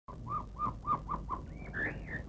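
A bird calling: a quick run of six short whistled notes, each rising and falling, about three or four a second, then a few higher sliding notes near the end.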